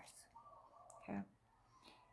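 Near silence in a pause in a woman's speech: she says a short 'okay' just after the middle, and a few faint clicks come before it.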